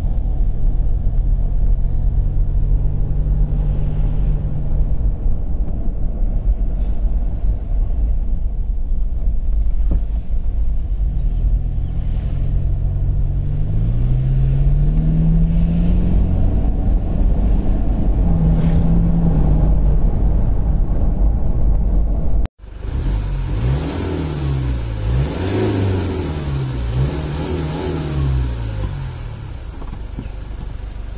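Toyota Land Cruiser Prado diesel engine heard from inside the cabin while driving, its note rising as it pulls and falling back. After a sudden break about three-quarters of the way in, the engine's pitch swings up and down repeatedly, about once a second.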